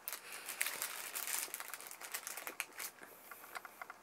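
Crinkling and crackling of food packaging being handled close by, dense for about the first three seconds, then thinning to a few scattered clicks.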